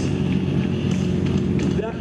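A 1000 cc sportbike engine idling steadily.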